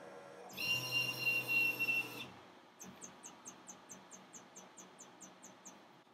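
Epilog laser engraver's stepper motors whining for under two seconds as the gantry carries the laser head out over the table, then a faint, even ticking of about five a second from the machine while its autofocus plunger jams in the vector grid.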